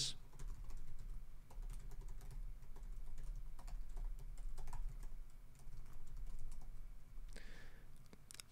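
Computer keyboard typing: a steady run of light key clicks.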